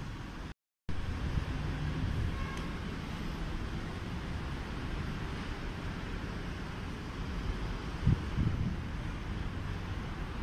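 Steady low background rumble with no clear source. It drops out completely for a moment about half a second in, and two soft low thumps come near the end.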